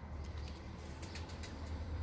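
Domestic pigeons cooing faintly, over a low steady rumble.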